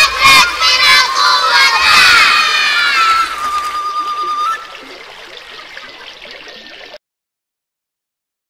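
Several voices shouting together, loud for about three seconds, then fading to a faint tail. The recording cuts to dead silence about seven seconds in, the end of a track.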